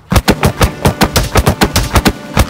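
A rapid flurry of bare-fist punches landing on a rubber punching dummy dressed in a padded bulletproof jacket, about seven sharp hits a second without a break.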